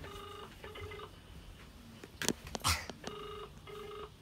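Phone ringback tone over a smartphone's speaker while a call rings out: a double beep, a pause of about two seconds, then another double beep. Two sharp clicks sound in the gap and are louder than the tone.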